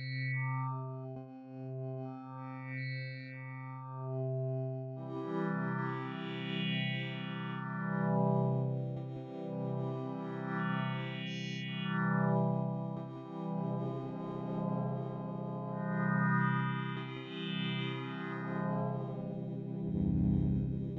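Dawesome MYTH software synthesizer playing a sustained, harmonically rich resynthesized tone through an amplitude modulation module, its brightness swelling and fading in slow, uneven waves. A deeper note joins about five seconds in and thickens the sound.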